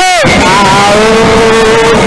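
Male lead voice singing a sholawat through a microphone: it slides down from a high note right at the start, then holds one long steady note, over the percussion of a patrol-music ensemble of bamboo and drums.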